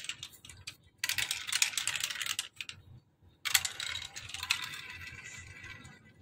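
Small plastic balls rolling and clattering down the tracks and funnels of a plastic block marble run: a burst of rapid clicking about a second in, a short pause, then a second longer run of clicks from about three and a half seconds on.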